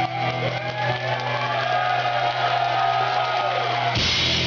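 A metal band playing live: a held low note with smooth, gliding melodic lines above it. The full band comes in heavily right at the end.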